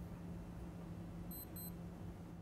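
Quiet room tone with a steady low hum, and two short high-pitched electronic beeps about a third of a second apart, a little past halfway.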